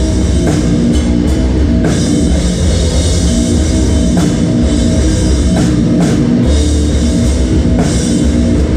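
A doom metal band playing live: loud, heavy distorted guitars and bass over a full drum kit with regular cymbal crashes.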